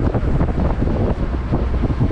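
Wind buffeting the microphone on the open deck of a boat at sea, a loud, rough rumble that flutters constantly.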